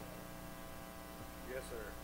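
Steady electrical hum, a low buzz made of many evenly spaced steady tones. A faint voice says "yes, sir" near the end.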